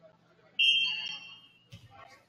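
Referee's whistle: one blast of steady pitch that starts sharply and tapers off over about a second, the signal for the serve. A sharp hit follows near the end.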